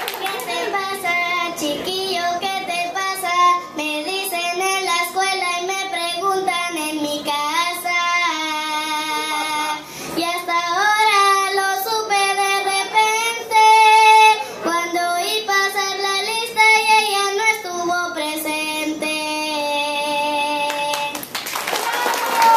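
A young girl singing a short excerpt of a song into a handheld microphone; her singing stops about a second before the end.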